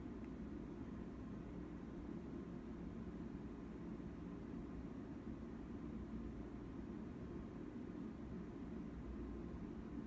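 Steady, low-pitched room noise: a faint, even hum with no clicks or other events.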